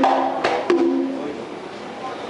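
Conga drums struck by hand: three ringing open tones in the first second, then the ring dies away.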